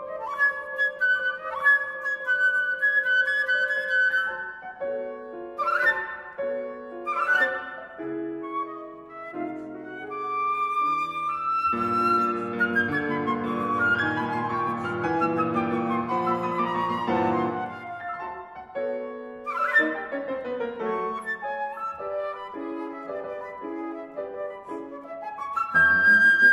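Concert flute and grand piano playing classical music together: the flute holds long notes and plays quick sweeping runs over the piano accompaniment, with a fuller, denser passage in the middle.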